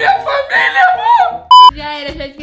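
Excited voices, then a single short, loud electronic beep about one and a half seconds in, a steady pure tone like an edited-in bleep sound effect.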